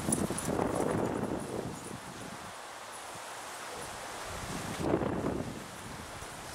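Dogs' paws thudding and rustling through grass as they run, in two bursts: one at the start and a shorter one about five seconds in.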